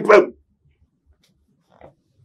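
A man's voice ending on a short, emphatic word, then near silence.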